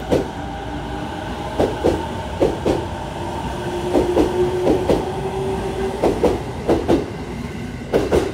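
JR 209 series electric commuter train pulling out of the platform, its wheels clicking in pairs over the rail joints as each bogie passes, about once a second, over a steady running noise. A steady motor whine sits under the clicks through the middle.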